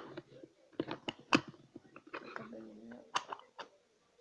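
Handling of a clear plastic slime container: a series of irregular sharp plastic clicks and crackles.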